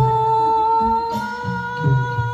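A woman singing one long held note into a microphone over amplified backing music with a steady low beat.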